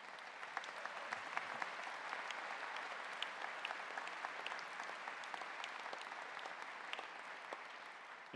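Audience applauding, a steady wash of many hands clapping that tapers off slightly near the end.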